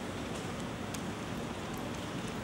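Steady background noise of a large auditorium: an even hiss over a low rumble, with faint scattered ticks.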